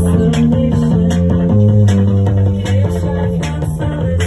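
Live rock band playing loud: bass and guitars holding low notes over regular drum and cymbal hits.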